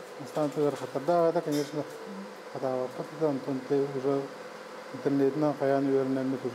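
Only speech: a man talking in short phrases, with a faint steady hum underneath.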